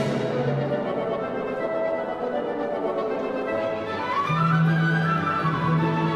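Orchestral music with strings and brass. It holds sustained chords, and a low note enters a little past four seconds while a melody climbs and then falls away.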